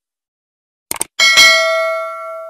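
Subscribe-button animation sound effects: a quick double mouse click about a second in, then a single bright bell ding that rings on and slowly fades.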